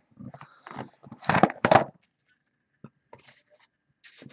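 Cardboard trading-card hobby boxes being handled: a box slid off a stack and set down on the table, a few scrapes followed by two louder knocks about a second in, then a couple of faint clicks.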